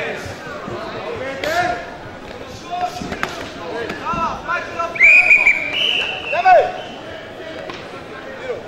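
Full-contact knockdown karate bout: blows land as a few sharp thuds while coaches and spectators shout, with a loud, long, high yell about five seconds in.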